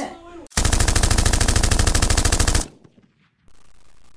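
A rapid, even burst of machine-gun fire lasting about two seconds that cuts off suddenly, used as a sound effect.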